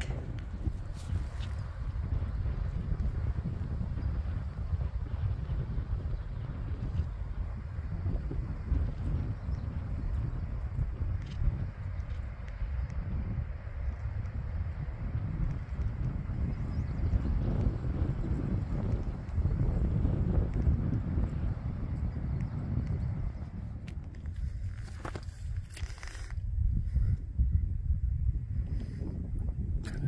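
Wind buffeting the microphone, a low rumble that rises and falls, with a few brief clicks near the end.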